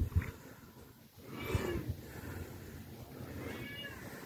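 An animal calling twice, two short high cries about two seconds apart.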